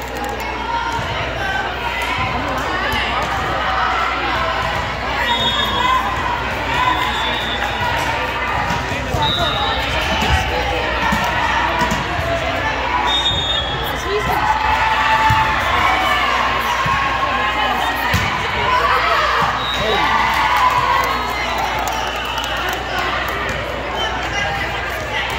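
Indoor volleyball game audio: the ball being struck and bouncing, players calling and shouting, and spectators cheering, all echoing in a large gym. A few brief high-pitched tones sound now and then.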